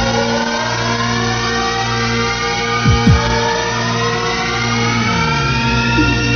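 Techno track in a build-up: a synth chord sweeps slowly upward in pitch over a held low drone, with a few quick falling blips and no steady beat.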